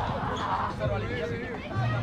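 Indistinct voices of several people talking and calling across an open softball field, over a steady low background rumble.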